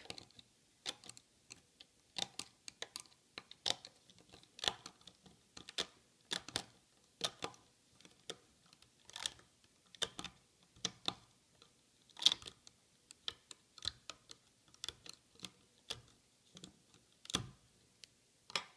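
Rubber bands being lifted off the pegs of a plastic Rainbow Loom with a loom hook: a scattered series of small clicks and snaps, irregular, about one or two a second.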